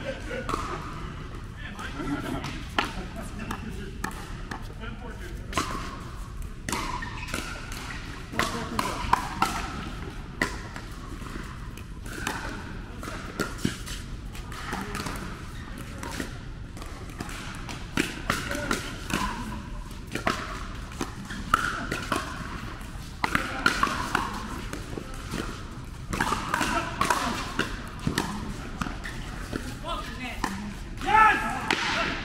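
Pickleball paddles hitting a plastic pickleball in a fast rally: sharp, irregular pops, several a second at times, with ball bounces on the court. Background voices run underneath.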